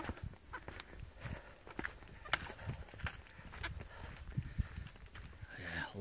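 A hiker's footsteps on a wet dirt forest trail: a loose walking rhythm of soft knocks and scuffs.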